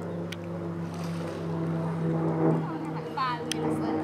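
Pool water splashing as a dog scrambles out of a swimming pool onto the deck, over a steady motor hum. A short rising squeal comes near the end.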